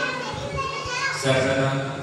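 Voices reciting prayers, with children's voices coming in briefly; a man's chanting voice comes back in about halfway through.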